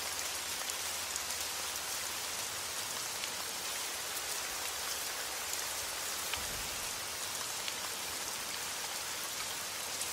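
Steady light rain falling: an even hiss with scattered drop ticks.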